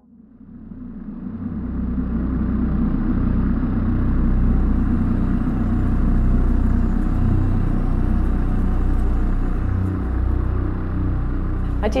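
A steady low rumble of room noise that fades in over the first two seconds and then holds level throughout.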